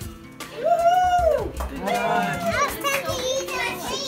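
Children's voices: one high, drawn-out call that rises and falls about a second in, then several children talking and exclaiming over one another, with music underneath.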